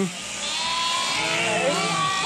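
Electric sheep-shearing handpiece running as a ewe is shorn, with sheep bleating faintly.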